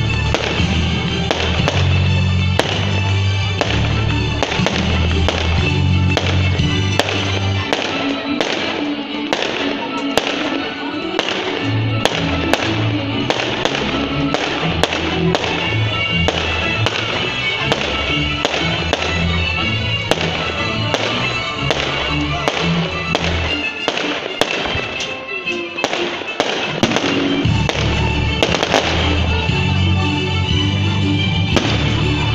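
Fireworks display: a steady series of sharp bangs and crackles from bursting shells, over music with a strong bass line. The bass drops out briefly twice.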